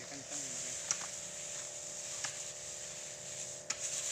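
Battery-powered Robot knapsack sprayer running, its electric pump giving a steady hum while the lance sprays, with a few light clicks.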